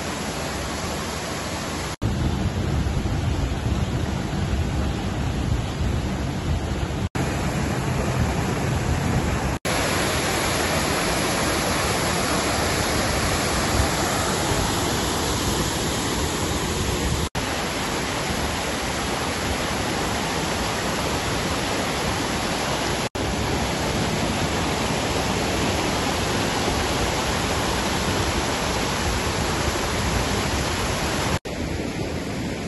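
Steady rush of water from a rocky mountain stream's cascades and pools, an even hiss with a deeper rumble in places, cut off abruptly for an instant several times as short clips are joined.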